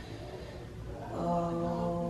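A woman in labour humming a long, low, steady tone through a contraction; the hum breaks off for a moment and starts again about a second in.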